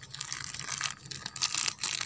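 Thin plastic bag crinkling irregularly as hands squeeze and twist it open around a soft lump of red lime paste.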